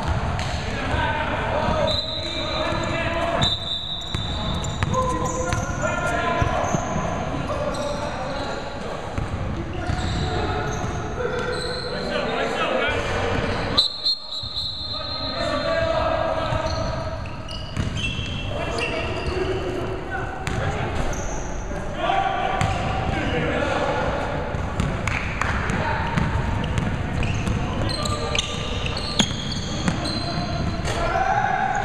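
Basketball bouncing on a hardwood gym floor during play, with scattered sharp impacts and players' voices echoing around the hall.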